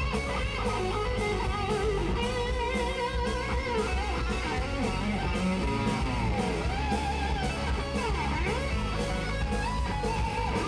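Live rock band playing an instrumental passage with no vocals: electric guitar and bass guitar over a steady drum beat, with a lead line whose notes bend up and down a few seconds in.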